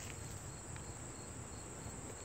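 Faint outdoor insect chorus: a steady high-pitched trill, with a fainter chirp repeating a few times a second, over a low rumble.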